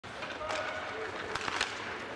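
On-ice sound of an ice hockey game: a steady scrape of skates on the ice, with two sharp stick-and-puck clicks about one and a half seconds in. A voice calls out briefly near the start.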